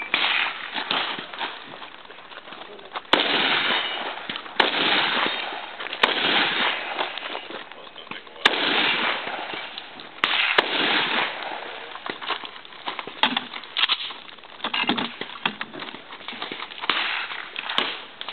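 Shotgun gunfire: about a dozen sharp shots at uneven intervals, some close together and others a few seconds apart, each trailing off in a long echo.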